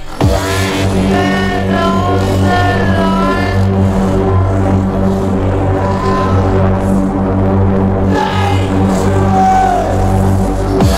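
UK hardcore dance track playing in a DJ mix: a sharp falling sweep as the beat drops in at the start, then a steady heavy bassline under a synth lead melody.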